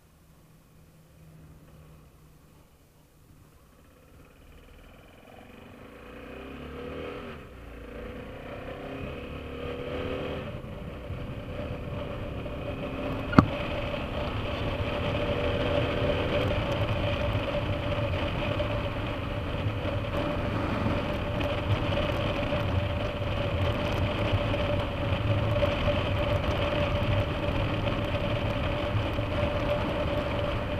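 BMW F650GS Dakar's single-cylinder engine, quiet at first, then rising in pitch through the gears as the motorcycle pulls away and settling into steady cruising under wind and road noise. A single sharp click near the middle.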